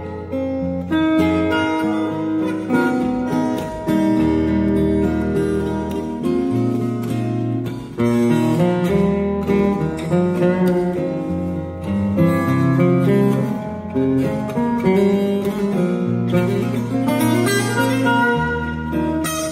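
Two acoustic guitars playing a fingerstyle duet through a stage sound system: a busy picked melody over low bass notes that change every second or two.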